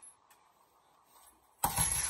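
Boxing gloves striking a 65 kg Ringside heavy bag: quiet at first, then a quick flurry of two or three hard punches landing near the end.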